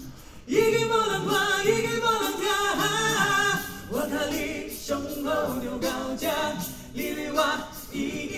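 A vocal group singing a cappella in close harmony, several voices over a low bass part. The singing comes in about half a second in, after a brief dip at the start.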